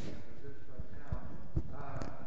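Indistinct talk in the room, with a few low knocks, the loudest about one and a half seconds in.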